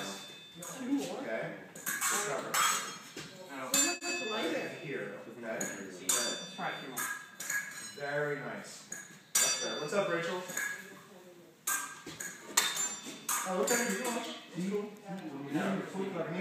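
Steel épée blades clashing and scraping against each other, in a string of sharp metallic clinks with a brief high ring, irregularly spaced.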